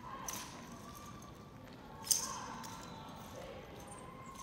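Drill rifles being handled by an armed color guard: a light click just after the start and a louder sharp clack about two seconds in, with a short echo after it.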